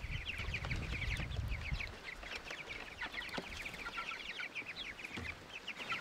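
A flock of young meat chickens peeping continuously in quick, short, high chirps, with a low rumble under them for the first two seconds.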